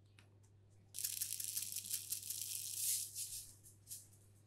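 Coloured sugar sprinkles scattered over rolled ice cream in a bowl: a dense run of many tiny ticks that starts about a second in, lasts nearly three seconds and fades near the end.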